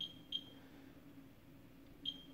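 CAS LP1000 label-printing scale's keypad beeping as number keys are pressed to enter a unit price: two short, high beeps, one at the start and one about a third of a second later.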